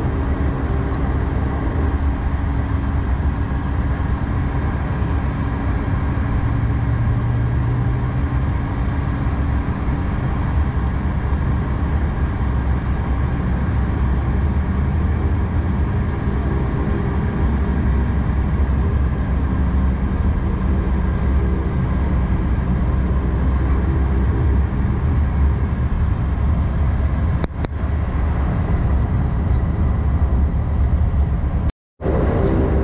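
Turboprop engines and propellers of a Bombardier Dash 8 Q400 heard inside the cabin while taxiing onto the runway: a loud, steady drone with low propeller tones. There is a single brief click near the end.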